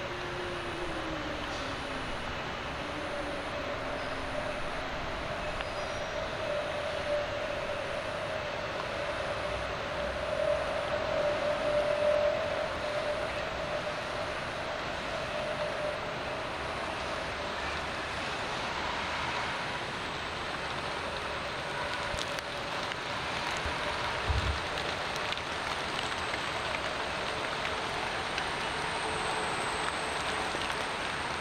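Steady outdoor background noise, with a faint droning tone that swells around the middle and a single low thump near the end.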